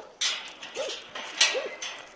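Dogs whining excitedly at people behind a wire fence: two short whimpers that rise and fall in pitch. Bursts of scuffling noise come in between.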